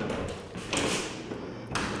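Two soft thumps about a second apart over faint room noise.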